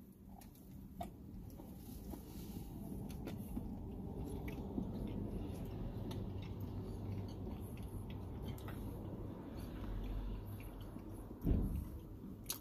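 Two people quietly chewing big mouthfuls of soft, doughy stuffed cookie, with faint mouth clicks. A short low thump comes near the end.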